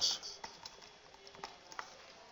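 Computer keyboard typing: a handful of irregular, unhurried keystrokes as a word is typed out.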